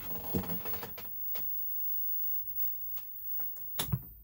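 A brief rustle, then a handful of sharp clicks from the TV set's push-button controls being pressed, the loudest a heavier clunk just before the end.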